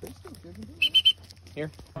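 Three short, high-pitched tones in quick succession, about a second in.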